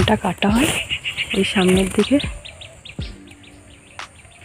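A person's voice in the first two seconds, then a rapid, even series of short high chirps, about seven a second.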